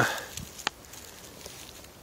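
Faint footsteps in dry fallen leaves, with two short sharp clicks within the first second.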